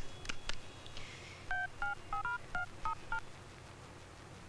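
A few faint clicks, then seven quick two-tone keypad beeps from a mobile phone as a number is dialed.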